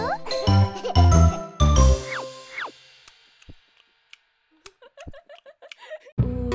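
Bouncy children's song backing music with chime-like notes, ending a couple of seconds in with two quick sliding tones and a fade. It is followed by a few seconds of near quiet broken only by faint clicks and soft tones.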